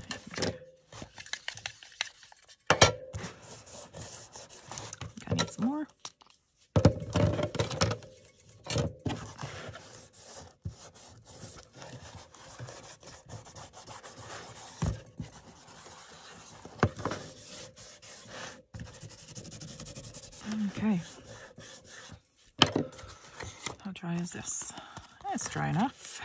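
A round foam ink-blending tool dabbed in a tin of colour and rubbed along the edges of paper, with paper being handled and smoothed and irregular knocks of the tool and tin on the table.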